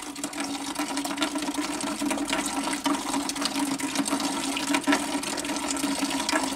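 Water running steadily through a newly installed carbon filter cartridge and pouring into a bucket, flushing the new cartridge before use.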